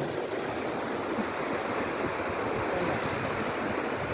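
Steady wash of sea surf.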